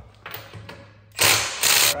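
Cordless impact wrench loosening a car's wheel lug nut, running in two short loud bursts a little after a second in, the second following right after the first.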